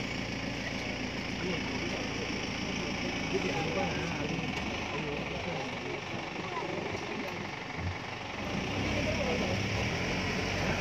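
Indistinct chatter of several people over an idling vehicle engine. The engine's low rumble drops away for a few seconds midway and comes back near the end.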